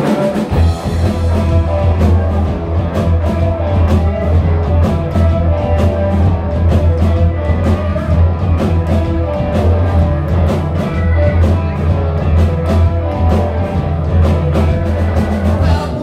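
Live rock band playing: electric guitars, bass and drums keeping a steady driving beat, loud and continuous.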